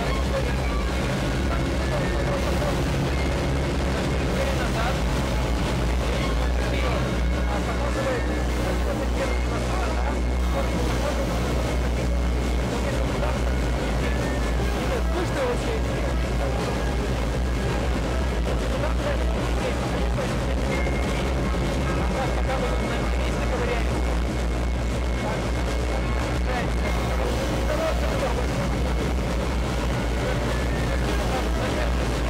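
Electric multirotor drive of an XPENG AEROHT X2 flying car in flight, heard from inside its cabin: a loud, steady drone of its eight propellers and motors, with low hum tones under a rushing noise. It is loud enough to drown out a voice inside the cabin.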